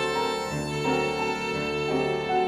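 Piano and violin duo: the violin plays a sustained melody over piano accompaniment, notes held and changing every half second or so.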